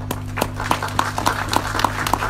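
Scattered audience clapping: irregular single claps, several a second, over a steady low hum.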